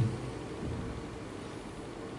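Room tone: a steady low hum with a faint held tone, with a short low sound right at the start.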